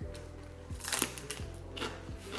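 Soft background music with four short, crisp snaps and crunches of fresh greens (water spinach and cilantro) being broken and bitten, the strongest about a second in.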